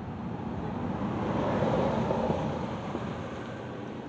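Rushing noise of a vehicle passing, swelling to a peak about two seconds in and then fading.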